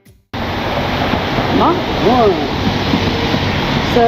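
Steady rushing noise of wind on the microphone outdoors, cutting in suddenly after a brief silence, with a voice speaking faintly for a moment about two seconds in.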